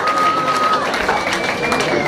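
Concert crowd cheering and shouting as a song ends, with long held whistles, one in the first half and another higher one near the end.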